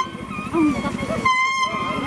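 A tune played on a leaf held between the hands at the lips: a buzzy, reedy, trumpet-like tone. A wavering, softer phrase gives way a little over a second in to a loud, steady held note.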